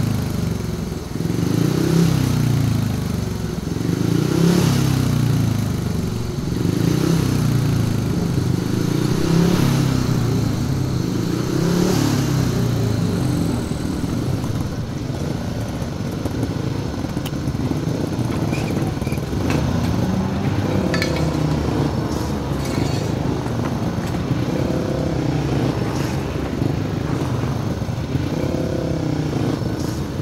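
Speedway motorcycle engines, single-cylinder methanol-fuelled machines, running in the pits and repeatedly revving up and dropping back, their pitch rising and falling every few seconds.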